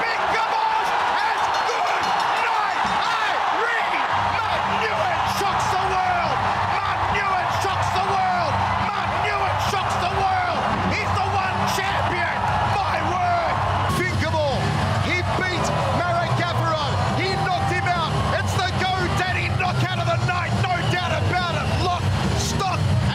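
Large arena crowd cheering and shouting at a knockout, many voices overlapping loudly and without a break. About four seconds in, a low steady hum joins underneath.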